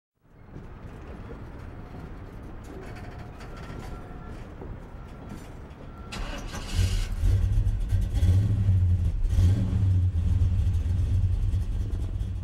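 Car engine rumbling at a low idle, then getting much louder about seven seconds in as it is revved up and held.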